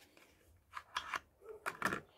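Small cardboard soap box being handled: short bursts of card scraping and rustling, starting about three-quarters of a second in and again near the end.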